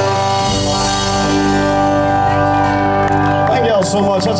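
Live band with guitars and keyboard holding a final chord that rings out at the end of a song. A man's voice starts speaking over it near the end.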